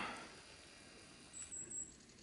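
Near silence: quiet forest background hush, with a faint, thin, high-pitched tone briefly about three-quarters of the way through.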